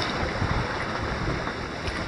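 Outdoor seashore noise: an even wash of sea and wind, with wind buffeting the microphone in an unsteady low rumble.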